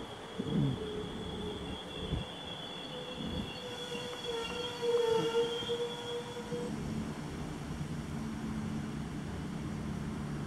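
SA135 diesel railcar braking to a stop at a platform: the brakes squeal in several high tones at once, loudest about five seconds in, and fall silent near seven seconds as the car stops. After that the railcar's diesel engine hums steadily at idle.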